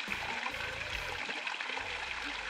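Thin stream of spring water trickling down a rock face and splashing into a shallow pool, a steady even rush.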